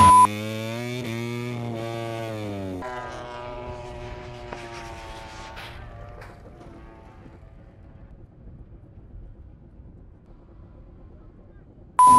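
Aprilia MotoGP racing engine heard on board, its pitch rising and then falling, then dropping again as the revs come down. It fades away to quiet after about six seconds.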